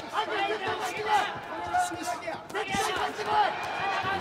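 Several voices shouting in a large hall, overlapping and breaking off, with a sharp thud about two and a half seconds in.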